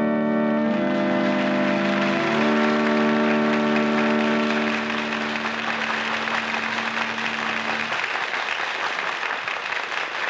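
Organ playing held closing chords, changing chord twice early on and ending about eight seconds in, while an audience applauds, the applause swelling in about a second in and carrying on after the organ stops.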